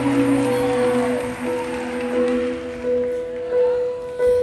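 Soft music of long, steady held notes, a quieter stretch between louder passages.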